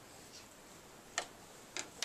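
Quiet room with two light, sharp clicks, a little over a second in and again about half a second later.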